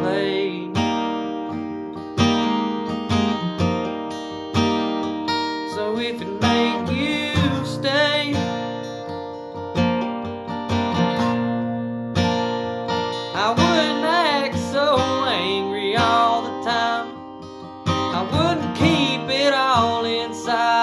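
Acoustic guitar strummed in a steady country rhythm, chords ringing between strokes. A singing voice comes in briefly about two-thirds of the way through and again near the end.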